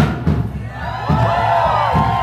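Live rock band playing with a steady drum beat between sung lines, with a swooping high part joining about a second in.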